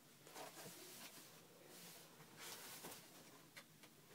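Faint rustling and handling of a sneaker being lifted out of its cardboard shoe box, a few soft brushes over near-silent room tone.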